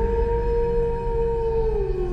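Wolf howl sound effect: one long howl that holds its pitch, then falls away near the end, over a low rumble.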